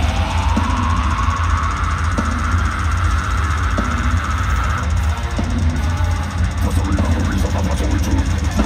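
Deathcore band playing live through a festival PA, heard from within the crowd: heavy distorted guitars, bass and drum kit. A held note glides slowly upward over the first five seconds.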